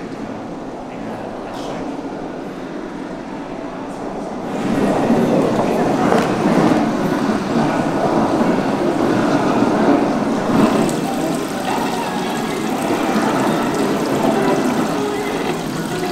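Water spraying from a galvanized sheet-metal hood and splashing into a metal tub: a steady rushing and splashing that starts about four and a half seconds in and gets louder.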